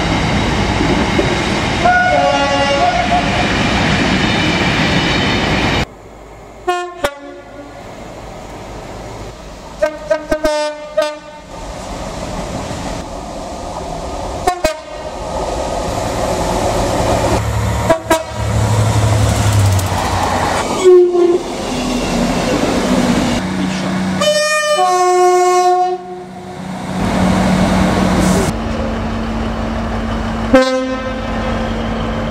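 A run of British diesel locomotives and trains sounding their horns one after another as they pass, each clip cut straight into the next. The trains include Class 56 freight locomotives, HST power cars, a Class 67 and Class 158 units. There are about eight horn blasts, some stepping between two pitches, over the rumble and wheel noise of passing trains and wagons.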